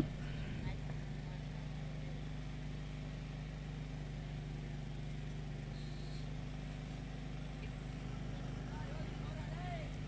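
A steady low hum over faint, even background noise.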